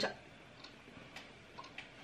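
Quiet room tone with a few faint, short ticks about half a second apart.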